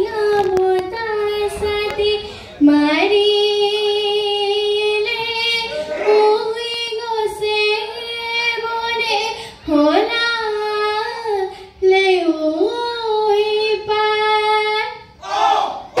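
A woman's high voice singing a Bihu song solo through a microphone, holding long notes with sliding ornaments between them, with no drum accompaniment.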